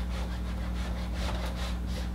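Whiteboard eraser scrubbing back and forth across a whiteboard, in a quick run of scratchy strokes, about four a second, over a steady low hum.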